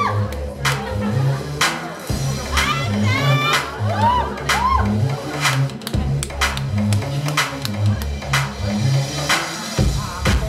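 Electronic dance music played for a dance routine, with a steady beat, a pulsing bass line and short swooping sounds over it.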